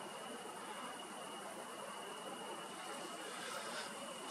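Faint, steady chirring of crickets: one continuous high trill over a soft hiss.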